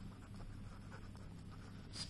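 Faint scratching of a pen writing words by hand on paper.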